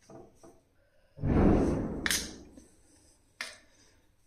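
Kitchen utensils and cookware being handled: a loud, low rushing scrape a little over a second in that fades over about a second, with a sharp click near its peak and another sharp click about three and a half seconds in.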